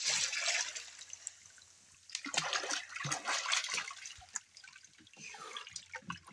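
A child swimming a frog kick, splashing and churning the water: a splash at the start, a longer run of splashes from about two seconds in, and a short burst near the end.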